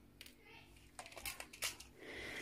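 A few faint small clicks and ticks as metal paper brads are taken from a plastic compartment box and set down on a cutting mat, mostly in the second half.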